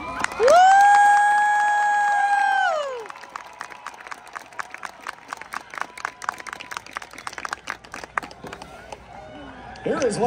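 A spectator's loud, high 'woo' cheer, sweeping up in pitch, held for about two seconds and falling away, followed by a crowd clapping and cheering.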